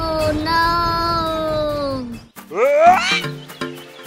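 Edited-in cartoon sound effects and music: a long pitched tone that slowly slides downward for about two seconds, then a quick rising swoop, then a bouncy tune of short stepping notes.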